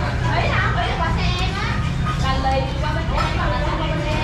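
Voices talking in the background over a steady low rumble.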